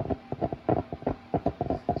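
A steam machine bubbling and sputtering in quick, irregular low pulses, several a second, as it drives steam out through its perforated head.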